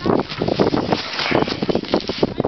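Loud, irregular rustling and scuffing close to the microphone: a camera rubbing against a snow-covered jacket, with some wind on the microphone.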